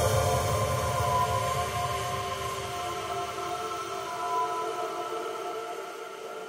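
Ambient background music with sustained, atmospheric tones and no beat, fading out gradually.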